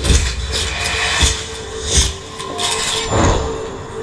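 Music-video intro soundtrack: a steady hum with several sharp knocks and clatter over faint music, leading into a string-backed song.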